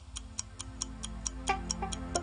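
A news bulletin's closing theme music: a steady ticking beat, about four to five ticks a second, over a low sustained drone, with a few pitched notes coming in about a second and a half in.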